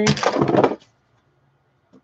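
Rustling clatter of tangled computer cables and plugs being grabbed and pulled by hand, lasting under a second.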